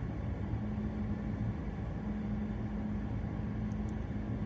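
A car running, heard from inside the cabin: a steady low rumble with a constant hum.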